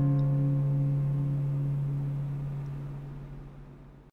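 The last acoustic guitar chord of the song, ringing out and slowly fading away.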